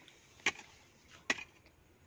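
A hand digging tool chopping into dry, stony soil: two sharp strikes, a little under a second apart.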